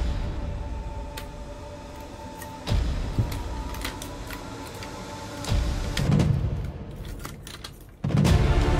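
Background music with held tones and low swells about three and five and a half seconds in, over small clicks and rattles of a Weijiang SS38 Optimus Prime transforming figure's joints and parts being handled, with a cluster of clicks near the end.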